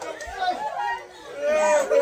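Several people talking over one another in a room: lively group chatter.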